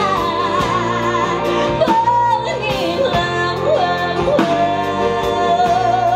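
Female vocalist singing live with vibrato, holding long notes that step down in pitch, the last one held about two seconds. She is accompanied by an acoustic band of acoustic guitar and violin.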